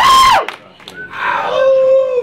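Loud shouted whoops: a short, high yell right at the start, then a longer, lower held shout about a second later.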